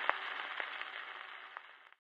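Surface noise of a shellac 78 rpm gramophone record after the music ends: steady hiss and crackle from the stylus in the groove, with a few sharp clicks, fading out near the end.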